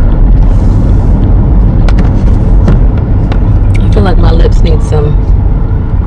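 Steady low rumble of car road noise heard inside the cabin while driving. A voice starts up about four seconds in.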